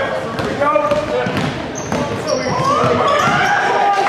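A basketball dribbled on a hardwood gym floor, bouncing about twice a second, under the voices of players and spectators in the gym. There are two brief high squeaks near the middle.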